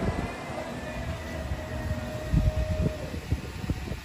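Wind buffeting the microphone in uneven low gusts, with a faint steady tone held for about three seconds.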